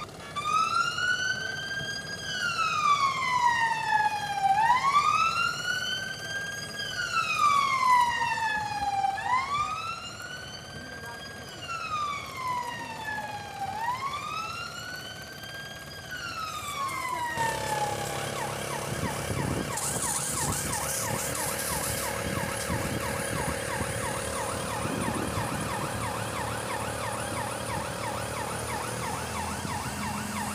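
Emergency vehicle siren wailing, rising quickly and falling slowly about every four seconds, then cutting off abruptly a little past halfway. It is followed by a steady engine-like running noise with a fast rattle.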